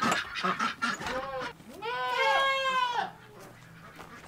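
Nubian dairy goats bleating: a short bleat about a second in, then a longer, louder one of about a second.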